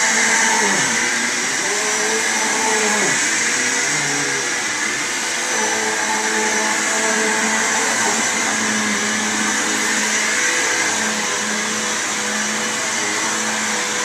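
Upright vacuum cleaner running steadily on carpet: an even motor hum and airflow hiss.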